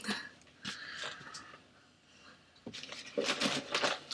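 Handling noises as dropped toiletry products are picked up: a sharp click at the start, a short scratchy rustle about a second in, then more shuffling near the end.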